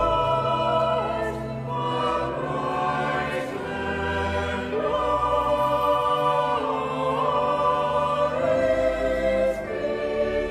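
Church choir singing a motet in several parts, moving between long held chords over steady low bass notes.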